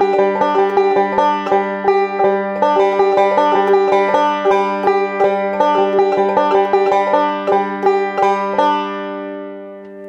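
Five-string banjo picked in a fast, continuous double index roll, broken up between full speed and half speed, with the last notes ringing out and fading near the end.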